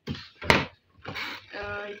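Plastic lid of a twin-tub washing machine's spin-dryer tub shut with a single sharp thunk about half a second in, followed by softer handling noise.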